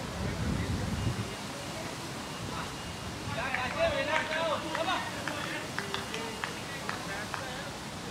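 Wind on the microphone at first. Then, about three and a half seconds in, distant shouted calls from cricketers across the field, followed by a few faint short clicks.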